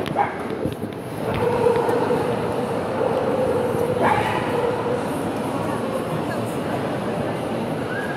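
Dachshunds yipping and whining over background crowd chatter. A long, steady whine starts about a second in and holds for several seconds, and short, sharp yips come at the start and again about halfway.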